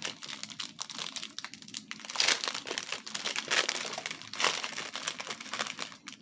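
Clear plastic bag crinkling and rustling in the hands as small bags of diamond painting drills are pulled out of it, irregular throughout, with louder crinkles about two seconds in and again past four seconds.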